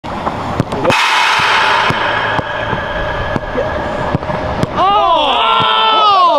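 Sharp thuds of footballs being struck on an artificial pitch, several in quick succession, then a man shouting calls to a teammate near the end.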